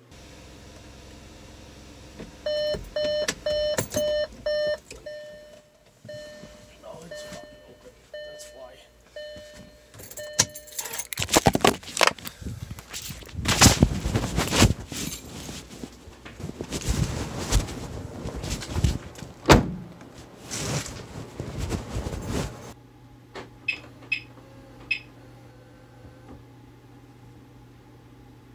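A quick run of about eight electronic beeps, three to four a second, then fainter single beeps of the same pitch. These are followed by about ten seconds of loud rustling and knocking handling noise on the microphone, and a few faint clicks near the end.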